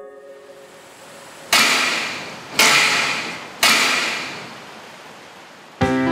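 Three sharp impacts about a second apart, each with a fading ringing tail, over the dying end of background music.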